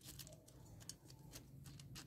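Near silence, with a few faint, scattered clicks of gravel stones shifting as fingers press the potting gravel around a cut bulb section in a clay pot.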